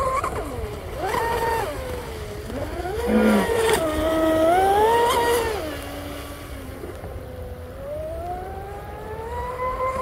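Fast electric RC offshore boat running at speed: its low-kV brushless motor whines, the pitch rising and falling as the throttle is worked, loudest in the middle few seconds.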